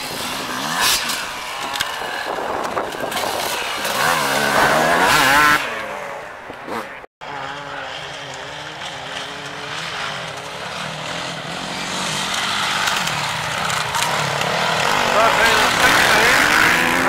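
Enduro dirt-bike engines revving hard as riders race across the course, the pitch rising and falling with each gear change. The sound cuts out for a moment about seven seconds in, then the engines build again and are loudest near the end as a bike passes close by.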